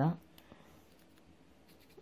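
A faint snip of small scissors cutting the tag end of braided fishing line, about half a second in.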